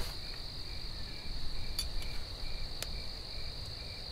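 Crickets chirping at night: one steady high trill, with a lower chirp repeating about three times a second. Two faint ticks come near the middle.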